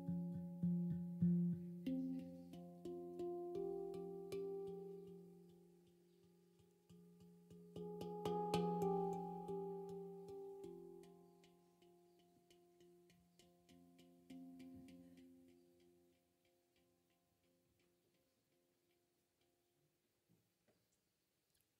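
Handpan played in slow improvised phrases: struck notes ring on and overlap, with a fuller cluster of strikes about 8 seconds in. The last notes fade out about three-quarters of the way through, leaving near silence as the piece ends.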